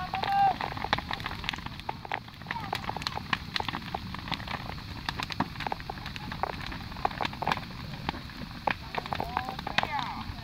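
Large brush-and-branch bonfire crackling, with frequent irregular sharp pops over the steady noise of the flames. A short voice call about half a second in is the loudest moment.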